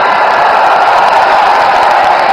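A loud, steady rushing noise with no pitch, strongest in the middle range.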